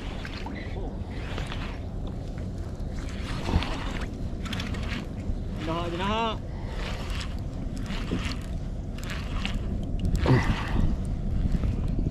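Steady wind noise on the microphone and water around a kayak on open sea. About six seconds in, a short vocal hum rises and falls in pitch.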